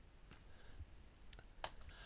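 Faint clicks of a computer mouse and keyboard, a few soft ones and one sharper click about a second and a half in, over near silence.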